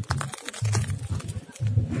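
Spiky durian husk halves being handled and set down on concrete, giving short clicks and scrapes. Under them is a low hum that pulses about once a second.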